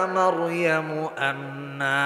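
A man's voice chanting a Quranic verse in Arabic in a melodic recitation style, with long held notes that step down in pitch.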